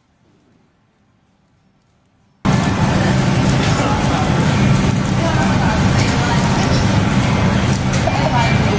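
Near silence at first, then, cutting in suddenly a couple of seconds in, a loud, steady supermarket din with voices in it.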